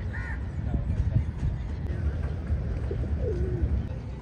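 Pigeons on a waterfront promenade, with one low, wavering coo about three seconds in, over a steady low rumble of outdoor background noise.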